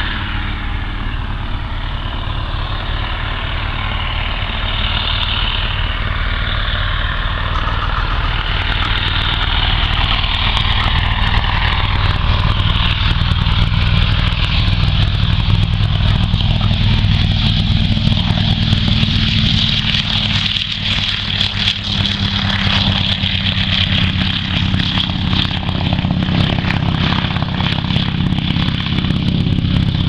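PZL M-18 Dromader's nine-cylinder radial engine running at high power with its propeller as the plane takes off and climbs away, growing louder over the first half and then holding steady.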